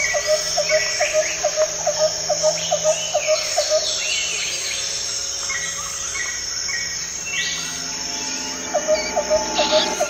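Forest ambience: birds calling over a steady, high insect drone. A short chirping call repeats about twice a second for the first few seconds and returns near the end, with other bird calls scattered throughout.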